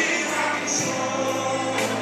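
A large group of children singing together as a choir, holding sustained notes.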